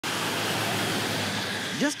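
Traffic on a rain-soaked road: a steady hiss of tyres on wet pavement with a low engine hum under it, as a pickup truck passes. A man's voice starts just before the end.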